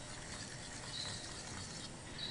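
Faint stirring of a spoon in a stainless steel saucepan of simmering strawberry gelatin glaze that is just starting to thicken.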